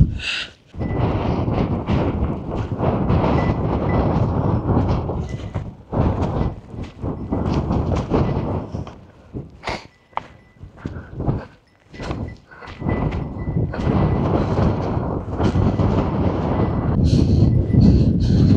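Strong mountain wind buffeting the microphone: a loud, rough rumble that surges in gusts, drops away in several short lulls through the first two-thirds, then blows steadily near the end. Gale-force wind, which the hiker puts at 20 to 30 metres per second.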